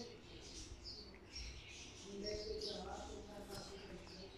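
Quiet room tone with faint background voices in the middle, and scattered faint high-pitched chirps.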